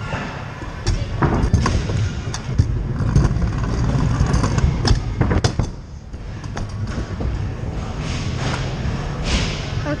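A kick scooter's wheels rolling over plywood skatepark ramps, heard from a camera on the rider: a steady low rumble with scattered clicks and knocks.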